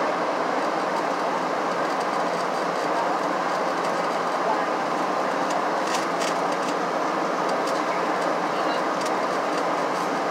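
Steady cabin noise of a Boeing 737-700 in descent, heard from a window seat: the even rush of airflow and the hum of its CFM56 turbofans. A few faint clicks come about six seconds in.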